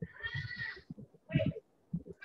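A child's voice coming over a video-call connection, one longer high-pitched sound followed by a short one about a second later, with no clear words.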